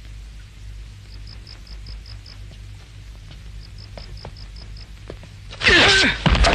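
Quiet film soundtrack with a steady low hum, scattered faint clicks and short runs of quick, faint high ticks. Near the end comes a sudden loud outburst, with a voice crying out in it.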